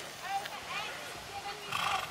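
A horse blows out once through its nostrils near the end, a short breathy snort, over a background of short high-pitched calls.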